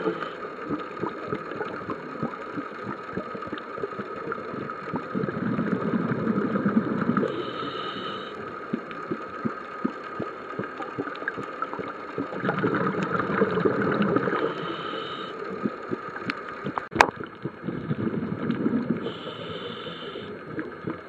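A scuba diver breathing through a regulator heard underwater: a gush of exhaled bubbles about every six seconds, each followed by a short high-pitched hiss as the diver inhales. A constant crackle of small clicks runs underneath, with one sharp click near the end.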